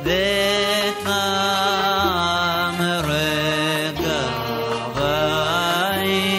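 A male cantor singing a Middle Eastern-style liturgical melody (piyyut). He holds each note for about a second and slides ornamentally between pitches, over a low accompaniment that moves with each note.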